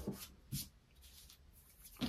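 Faint handling sounds of hands pressing and rubbing a glassine bag with glued fabric on a cutting mat, with two short soft knocks, one at the very start and one about half a second in.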